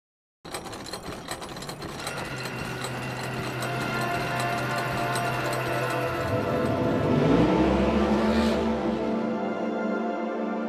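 Logo-reveal intro music and sound effects: a fast mechanical ticking over steady tones builds up, a rising sweep with a low rumble comes about six to eight seconds in, then a held chord settles as the logo resolves.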